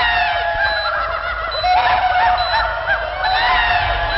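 Several men laughing loudly together, their overlapping cackles and whoops rising and falling throughout.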